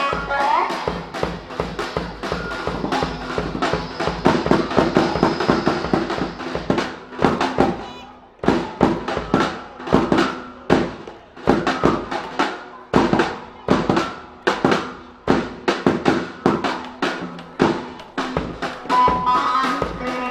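Live fast dance music from a band, an amplified plucked string melody over a drum kit. About eight seconds in it drops to a drum-led passage of hard, regular beats, and the melody returns near the end.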